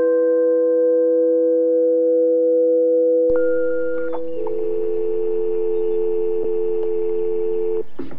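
Electronic IDM music: a chord of pure, sine-like synth tones held steadily, moving to a new chord about four seconds in, with a faint hiss joining just before. The tones cut off just before the end.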